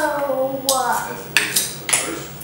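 A young girl's drawn-out, wordless voice, falling slowly in pitch, followed by a few sharp clinks and short scrapes of a measuring cup against a stainless steel pot as she scoops ingredients.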